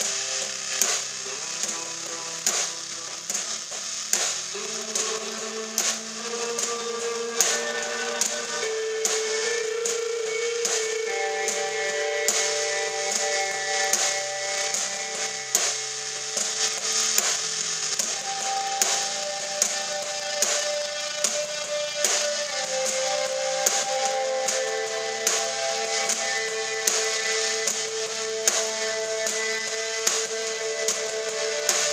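Live rock band playing: ringing electric guitar chords over a drum kit keeping a steady beat of drum and cymbal hits.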